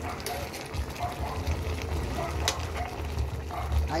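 Broth bubbling and sizzling in the pan around a whole chicken and small potatoes, over a low steady hum, with a single click about two and a half seconds in.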